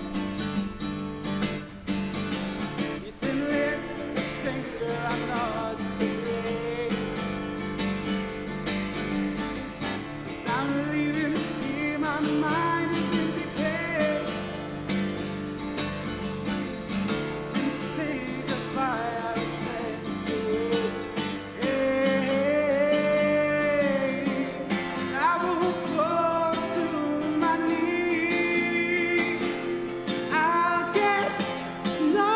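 A man singing to his own acoustic guitar accompaniment: a slow song with the guitar played steadily underneath and the voice carrying the melody, fuller and louder in the second half.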